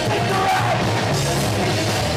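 A punk rock band playing loudly and live: distorted electric guitars and a drum kit, with a singer's voice on top.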